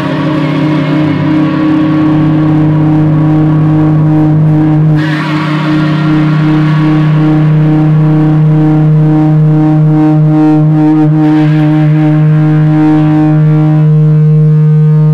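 Electric guitar feedback through an amplifier: a loud, steady drone of held tones with overtones stacked above a low note. It dips briefly about five seconds in, and from about halfway on its upper tones start to pulse and waver.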